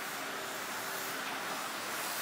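Steady rushing background noise, with no distinct strokes or impacts.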